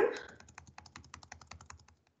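Computer keyboard being typed on: a quick, fairly even run of faint key clicks lasting about a second and a half, stopping shortly before the end.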